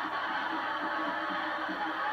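Music mixed with crowd noise, played back through a television's speaker.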